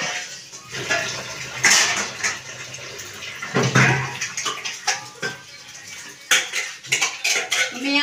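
Stainless-steel utensils clattering and clinking in a sink as they are scrubbed and rinsed, with sharp metal knocks and short splashes of running water.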